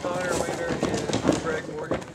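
Voices of a group of people talking and laughing, with no clear words.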